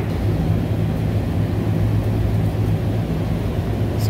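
Steady low machinery hum of running rooftop HVAC equipment, even and unbroken.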